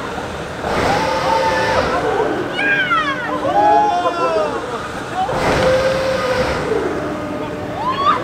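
Halve Maan swinging-ship ride swinging back and forth: a rushing whoosh twice as the ship sweeps past, and riders screaming and yelling in between as it swings high.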